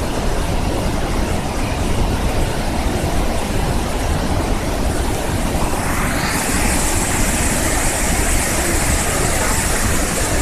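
White-water rapids of the Berdan River rushing steadily, a loud unbroken wash of water noise with a deep low rumble. About six seconds in the rushing turns brighter and hissier.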